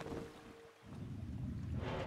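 The tail of a music cue fading out on a held note, followed by a low rumbling background noise.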